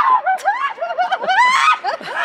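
A woman laughing in excitement, a quick run of high-pitched, rising and falling giggles and squeals.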